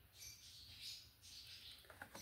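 Near silence: room tone with a few faint, soft high-pitched rustles.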